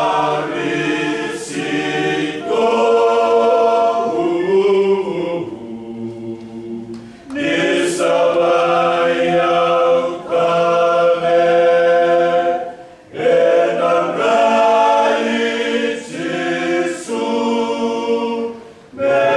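A small male choir singing a hymn a cappella in close harmony, holding long chords. The singing drops softer for a moment about six seconds in and pauses briefly for breath near the thirteen-second mark before the next phrase.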